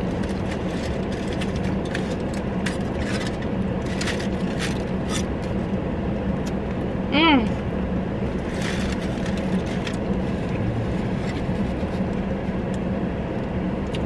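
Steady low hum inside a parked car, with close-up chewing and scattered crinkles and clicks from a foil-wrapped gyro being handled.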